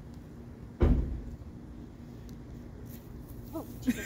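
A van door slammed shut: one heavy, low thump about a second in that dies away quickly.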